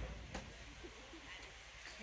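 Quiet background with a single faint click about a third of a second in and faint snatches of voices.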